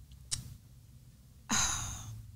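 A woman's sigh about one and a half seconds in, after a short quiet pause broken by a single small click.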